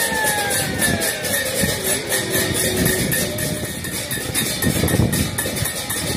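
Music of a Hindu lamp aarti: bells or cymbals ringing in a fast, even rhythm under a slowly sliding melodic line, over a steady rumble of crowd and surroundings.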